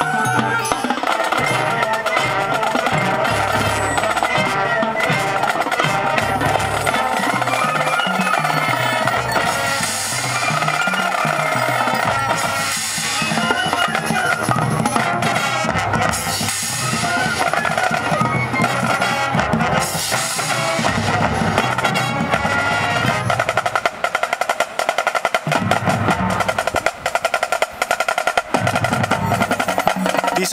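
Marching showband playing its show: woodwinds and brass over a drumline of snare and bass drums, with snare rolls. The drums stand out more in the last few seconds.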